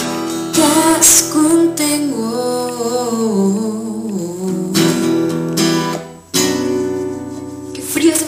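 Live acoustic guitar playing, with a voice singing a melody over it. The music dips briefly about six seconds in.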